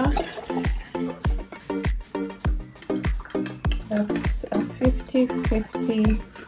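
Background music with a steady drum beat and a melodic line.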